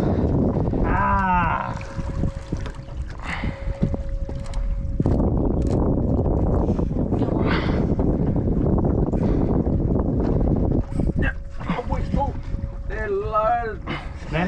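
Loud wind buffeting the microphone on an open boat, with a faint steady hum running under it at times. Excited voices break in about a second in and again near the end.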